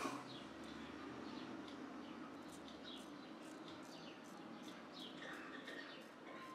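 Faint short scratchy strokes of a shavette razor blade over lathered stubble, with birds chirping in the background.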